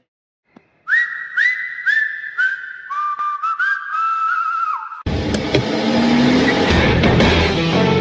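Outro music: after a moment of silence, a whistled tune of upward-sliding held notes over a light ticking beat, then about five seconds in a loud rock track with electric guitar cuts in.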